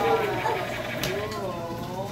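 Voices of children and adults talking over one another, with bending, sing-song pitches.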